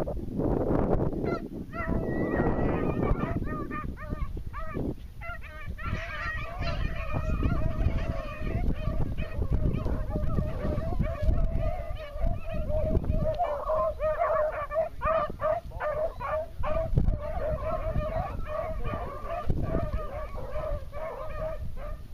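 A pack of beagles baying as they run a rabbit line: many short, overlapping, honking cries on a fairly steady pitch, growing denser about six seconds in.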